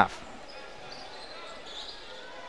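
Faint sound of a basketball being dribbled on a hardwood gym court during play.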